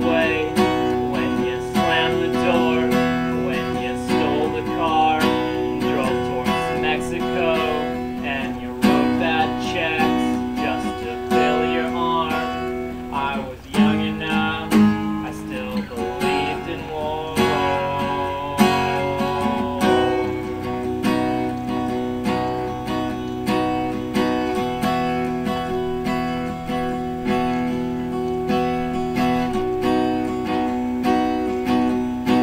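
Steel-string acoustic guitar strummed steadily with a man singing over it; the voice drops out about two-thirds of the way through, leaving the guitar playing alone.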